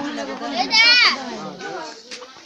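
Several people talking over one another, with a shrill cry that wavers rapidly in pitch about a second in, the loudest sound here.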